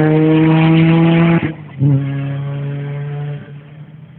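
Rally car engine at full throttle, accelerating away on a gravel stage. About one and a half seconds in the note breaks off for a moment and comes back lower, an upshift, then climbs again and fades as the car moves off.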